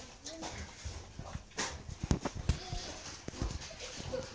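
A pig chewing watermelon rinds, with several sharp crunches between about one and a half and three and a half seconds in. Faint voices sound in the background.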